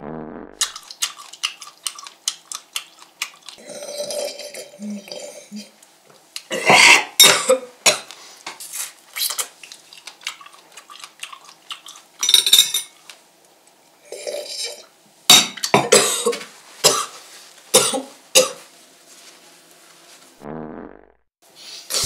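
Cutlery clinking and scraping on a plate in irregular clicks, with several louder bursts of noise in between.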